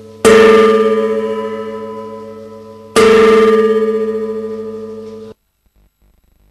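A deep-toned struck metal percussion instrument, struck twice about three seconds apart. Each stroke rings on with a slow, wavering decay, and the ringing cuts off suddenly near the end.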